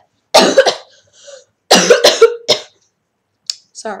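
A young girl coughing hard in two bouts, the first about a third of a second in and the second just before two seconds in, each a few harsh coughs close together. The coughing comes from a cold.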